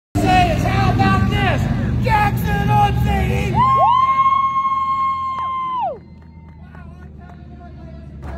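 A man's voice over a microphone and loudspeaker, talking and then drawing out one long call for about two seconds, announcer style. It stops suddenly about six seconds in, leaving a low background murmur.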